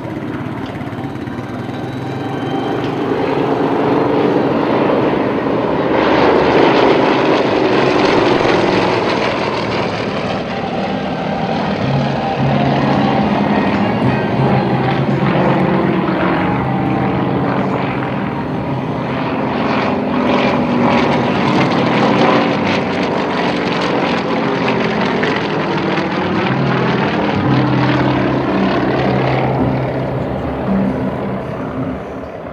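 Several Yakovlev Yak-52 aerobatic planes, their nine-cylinder radial engines and propellers droning continuously overhead, the pitch rising and falling as the aircraft pass and manoeuvre.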